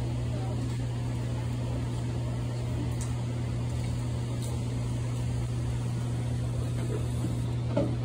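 A steady low hum that does not change, under faint, indistinct voices.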